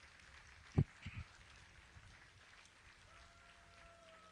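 Quiet background with a short low knock a little under a second in and a softer one just after, then a faint thin tone held near the end.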